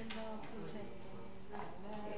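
Indistinct voices of several people talking at once in a room, with a couple of light clicks.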